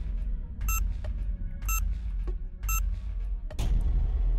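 Quiz countdown-timer sound effect: three short high beeps about a second apart over background music with a steady low bass, then a brief rush of noise near the end as the count runs out.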